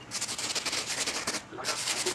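Bristle brush scrubbing a sneaker wet with cleaning solution: quick back-and-forth scratchy strokes, with a brief pause about one and a half seconds in before the scrubbing resumes.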